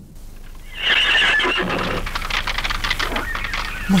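A horse whinnying about a second in, followed by the rapid hoofbeats of galloping horses.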